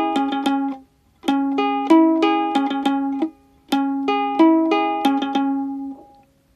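Ukulele played keroncong-style in C minor, the chord struck in rapid repeated picked strokes. It comes in three short phrases with brief pauses between them.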